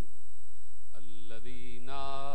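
A man's voice through a microphone reciting in a drawn-out, chant-like tone, pausing for about a second at the start over a low steady hum and taking up again about a second in.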